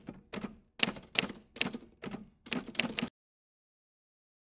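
Typewriter keys clacking in short, irregular clusters, stopping abruptly about three seconds in.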